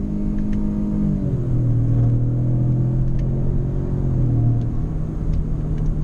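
The 2018 Lincoln Navigator L's 3.5-litre twin-turbo V6 pulling under hard acceleration, heard from inside the cabin. The engine note climbs, then drops about a second in as the automatic shifts up. It holds steady and drops again about five seconds in.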